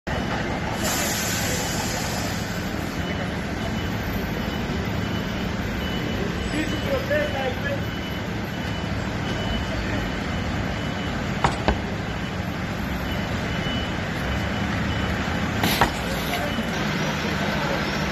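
Fire engines idling in the street, a steady low engine rumble, with a faint high-pitched beep repeating on and off and two sharp knocks, about 11 and 16 seconds in.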